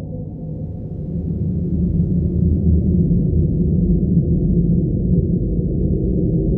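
Dark ambient music: a deep, dull drone of low sustained tones with nothing bright above it, swelling louder about a second and a half in.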